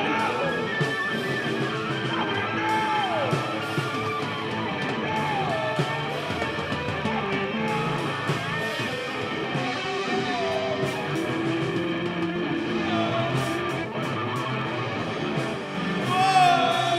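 Instrumental break in a rock song: a guitar plays a lead line of sliding, bending notes over the band's steady backing.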